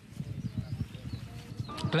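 Floodwater sloshing and splashing around legs wading through it, heard as a rapid, irregular run of low knocks and rumbles.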